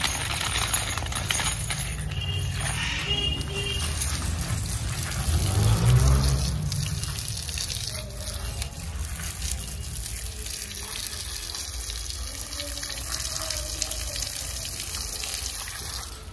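Water spraying from a garden hose, fanned out by a thumb over its end, splashing onto a wet dog's coat and the brick paving. It runs steadily and swells louder for a moment about five to six seconds in.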